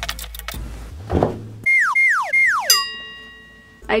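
Plastic clothes hangers clicking and rattling on a closet rod as clothes are pulled off. Then three quick falling whistle tones and a ringing tone that fades out, a cartoon-style sound effect added in the edit.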